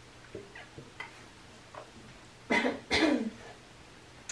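A woman coughing twice in quick succession, about two and a half seconds in, while she is losing her voice. A few faint small sounds come before the coughs.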